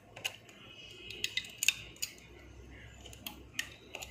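Irregular sharp plastic clicks and taps, about half a dozen, the loudest a little under two seconds in: a plastic hook working rubber bands over the pegs of a plastic bracelet loom.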